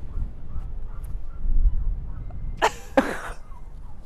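Wind buffeting the microphone, a steady low rumble throughout, with a short breathy vocal outburst about two and a half seconds in.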